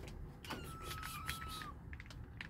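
A kitten meowing once: one thin, high, drawn-out call about a second long that falls slightly in pitch, with a few faint clicks around it.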